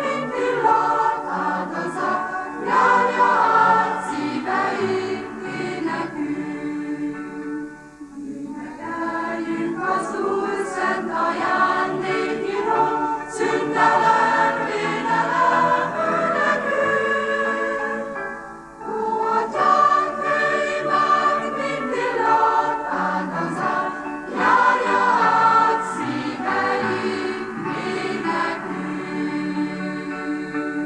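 Mixed choir of women and men singing a sacred song, with short breaks between phrases about eight and nineteen seconds in.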